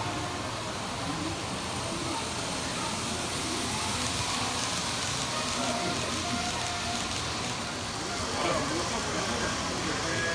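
Indistinct background voices and room noise, with the soft rolling hiss of an N-gauge model train passing on its track, a little louder in the middle.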